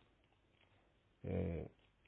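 A pause, then about halfway through a single short held vowel in a man's voice, lasting about half a second.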